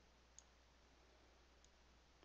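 Near silence, with two faint computer-mouse clicks, one about half a second in and one near the end.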